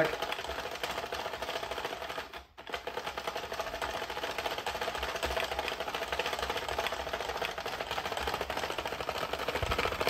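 Sentro plastic knitting machine being hand-cranked: a rapid, steady plastic clatter of the needles and crank, with a recurring click that the owner puts down to a gear he thinks he damaged when scrubby yarn jammed the machine. The cranking stops briefly about two and a half seconds in, then carries on.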